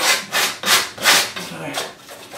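A small trowel blade scraping and dragging thick acrylic paint across a stretched canvas in several short strokes.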